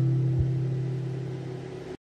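The song's final chord, played on acoustic guitar, ringing out and fading steadily, with a soft low thump about half a second in. The sound cuts off abruptly at the end.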